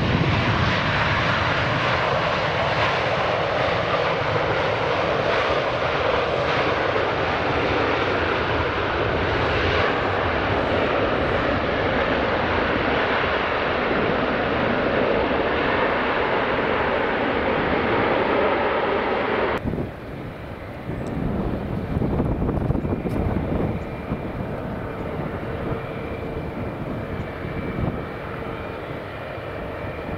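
A China Southern Airbus A330's jet engines running loud as it touches down and rolls out along the runway. The sound breaks off abruptly about 20 seconds in. Then comes the quieter jet noise of a Qantas Boeing 787 landing, with a faint steady hum and a high whine.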